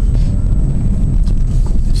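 Car cabin noise while driving: a steady low rumble of the engine and tyres on the road.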